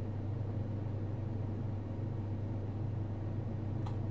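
Steady low hum of running electrical equipment, with one faint click near the end.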